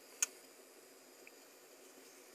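A single sharp click shortly after the start as the blade of a Buck 251 Langford liner-lock folding knife is closed, then quiet room tone with one faint tick.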